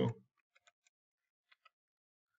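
Faint clicks of computer keys being typed, a few in quick succession about half a second in and two more about a second and a half in.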